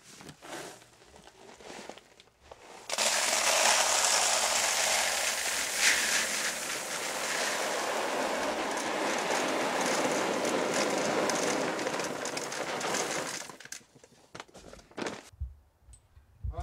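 Dried beans pouring from a sack into a plastic five-gallon bucket: a steady, dense hiss and rattle of beans landing on beans. It starts about three seconds in after some quieter handling of the sack, runs for about ten seconds and stops a couple of seconds before the end.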